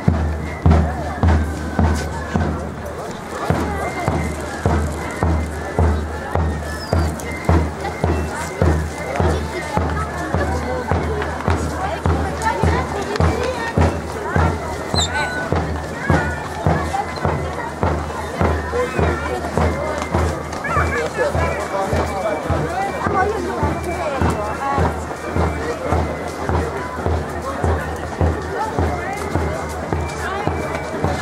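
Military marching band playing, with a steady bass-drum beat about twice a second, over crowd chatter.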